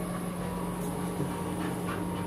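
A steady low hum, with a few faint light clicks and scuffs as dogs move about on a sofa.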